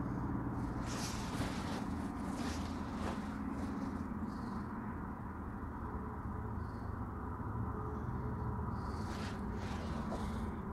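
Faint soft puffs and breaths, several times, of a man drawing on a tobacco pipe and blowing out the smoke, over a steady low hum of room tone.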